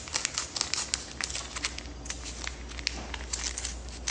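Kitchen scissors snipping through a plastic pouch, the plastic crinkling as it is handled and cut, in a run of short, irregular snips and crackles.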